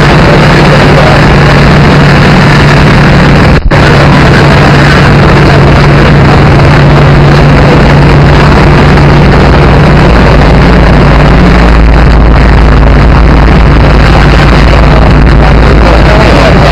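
Loud, steady vehicle engine noise with a constant low hum. A brief dropout about three and a half seconds in is a cut in the recording.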